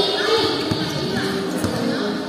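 A basketball bouncing on a court floor a couple of times, with players' voices echoing in a large covered hall.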